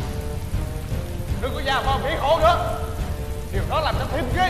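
Heavy rain falling steadily and densely. A high, wavering voice rises and falls over it twice, in the middle and near the end.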